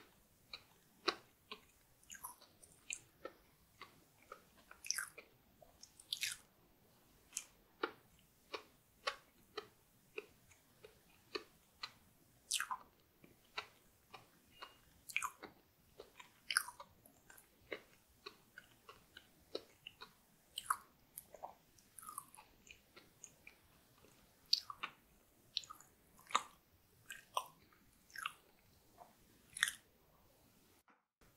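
Close-miked ASMR chewing of a soft chocolate dessert: irregular wet mouth clicks and smacks, about one or two a second.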